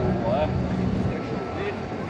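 Busy pedestrian street ambience: passers-by talking indistinctly over a steady low hum.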